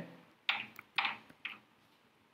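Three faint, sharp computer keyboard keystrokes about half a second apart.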